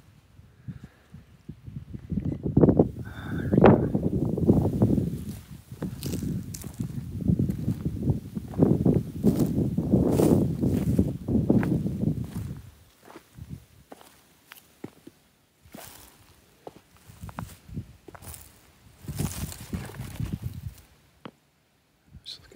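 Footsteps and rustling as a person walks over dry grass and the rocky bank, heavy and continuous for the first half, then lighter and scattered steps.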